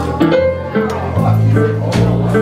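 Live jazz duo of piano and bass playing together, the bass plucking a new low note about every half second under the piano's chords.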